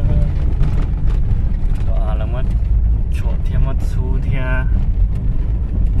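A car driving along an unpaved dirt road, heard from inside the cabin: a steady low rumble of engine and tyres on the rough surface.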